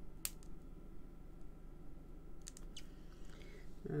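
Light clicks and taps of small thin metal cutting dies being handled and set down on stamped card, with one sharp click just after the start and a few fainter ones about two and a half seconds in.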